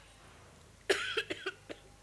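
A person coughing: one burst about a second in, then a few short coughs in quick succession.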